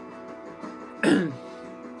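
A man clears his throat once, sharply, about a second in, between sung lines. The singer has a cold and a sore throat. Steady backing music plays underneath.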